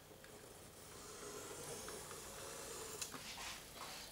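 Faint scratch of a pencil lead on drawing paper as a curve is drawn freehand, with a few light ticks near the end.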